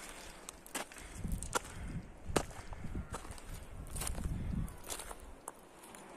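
Footsteps on a dry mountain trail: irregular sharp clicks and snaps underfoot, with a run of low thuds on the microphone from about one to five seconds in.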